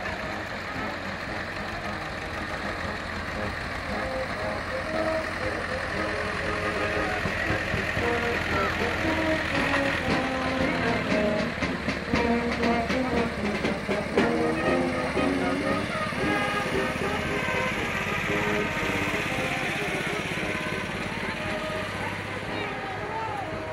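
Farm tractor engines running as decorated wagons roll slowly past, louder in the middle as they come close, with people's voices and music from the procession over them.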